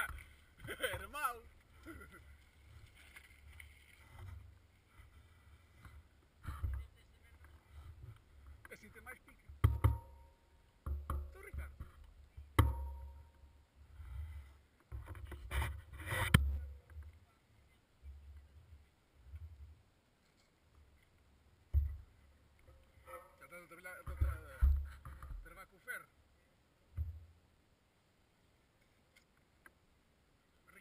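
Wind gusting on an outdoor camera microphone in irregular low rumbles, with a few sharp knocks.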